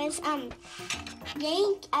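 Gamelan-style music: struck metal notes ringing over a steady tone, with a young girl's voice making drawn-out sounds and starting to speak near the end.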